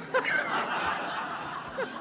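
An audience laughing together in a hall after a joke, a dense wash of laughter that eases off slightly toward the end.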